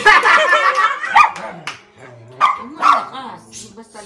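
A small dog barking several times in short bursts, among people's voices.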